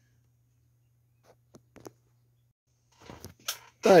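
Near silence with a faint low hum and a few faint, short clicks, then a man's voice starting near the end.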